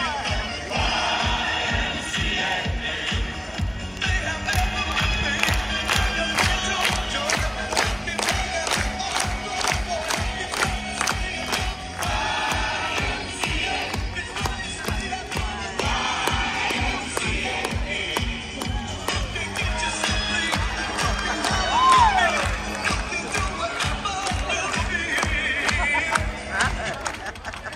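Stadium crowd clapping in time with music from the show's speakers, with crowd noise underneath. A brief rising-then-falling tone stands out near the end.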